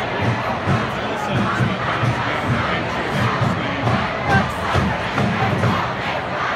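A large stadium crowd cheering and shouting over a marching band whose drums keep a steady beat of about three strokes a second.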